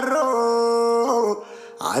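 A man singing a nasheed, holding long drawn-out notes with small melodic steps between them. The voice breaks off briefly about a second and a half in, then swoops upward into the next phrase near the end.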